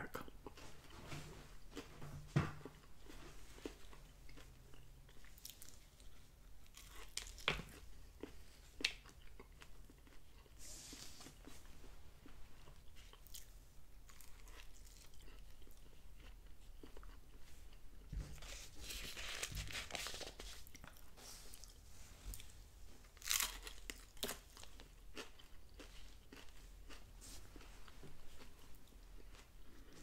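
Close-up biting and chewing of a Taco Bell crunchy taco's hard corn shell: scattered sharp cracks and crunching spells with quieter chewing between. The shell has partly gone soft, keeping its crunch mostly at the front edge.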